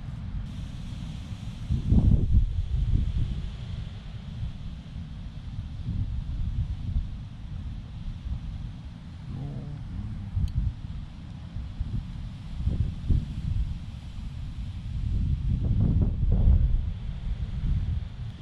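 Wind buffeting the microphone: an uneven low rumble in gusts, strongest about two seconds in and again near the end.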